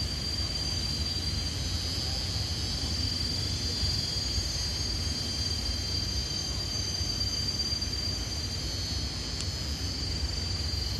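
A steady, high-pitched drone of insects over a constant low rumbling background.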